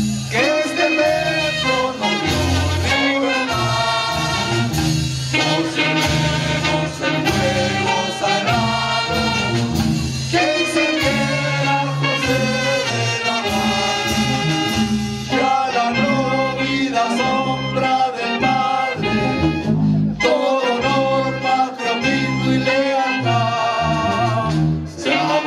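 A group of people singing the school hymn along with instrumental accompaniment that includes brass.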